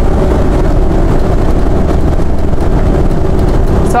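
Steady in-cab rumble of a 2017 Jayco Precept 31UL Class A motorhome cruising at highway speed, about 100 km/h: engine and road noise, heaviest in the low end.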